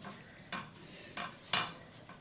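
Four light clicks and taps from hands working yarn and the wooden parts of a Cricket rigid-heddle loom during warping. The loudest tap comes about one and a half seconds in.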